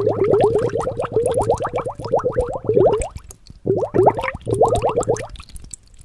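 Bubbling-water sound effect: a quick run of short rising bloops, about seven a second, in bursts broken by a short pause about halfway through.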